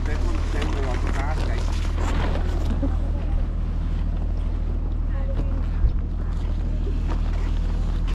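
A steady low rumble, with faint voices in the first few seconds.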